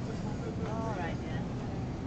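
Steady low rumble of supermarket background noise as the person filming walks along the aisle, with a short, faint voice calling out about halfway through.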